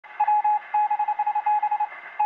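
Morse code beeps: a single steady tone keyed on and off in a rapid run of short and longer pulses, dots and dashes, with a thin, narrow-band sound.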